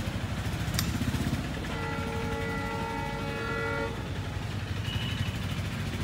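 A horn sounds once, one held note lasting about two seconds, over a steady low rumble.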